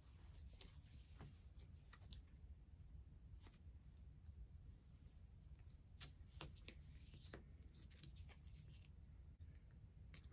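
Faint soft taps and slides of game cards being picked up and laid down on a table, several small clicks scattered over near-silent room tone.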